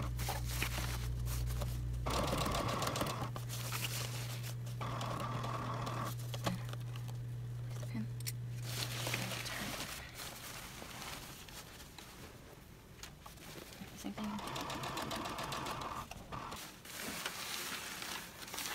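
Brother computerized sewing machine stitching in short runs, with a steady motor hum that stops about ten seconds in. After that, quieter handling of the fabric and a brief further stretch of stitching near the end.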